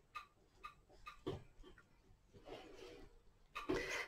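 Faint taps and rustles of a paintbrush dabbing glue-soaked tissue paper down onto a willow frame: a few small clicks, then a soft rustle.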